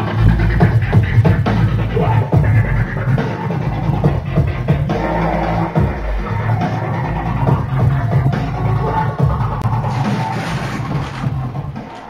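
Background music with drums, fading out near the end.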